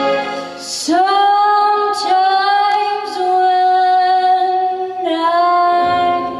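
A young girl singing into a microphone over a pop backing track, coming in about a second in and holding long, steady notes that step to new pitches twice.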